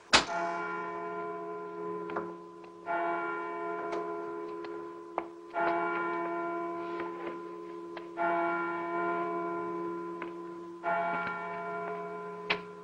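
A bell tolling slowly: five strokes about two and a half seconds apart, the first the loudest. Each stroke rings on and fades into the next, with a few faint clicks between the strokes.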